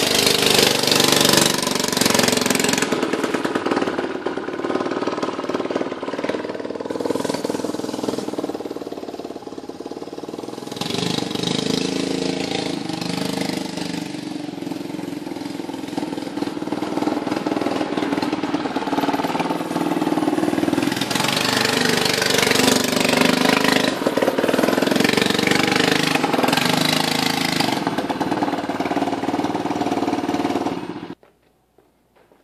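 Modified Predator 212cc single-cylinder four-stroke engine on a John Deere mower go-kart, running hard and revving up and down as the kart is driven. It is loud at first, fades for a few seconds in the middle as the kart moves off, and grows loud again near the end as it comes back.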